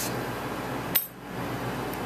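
Steady room hum and hiss with one sharp click about a second in.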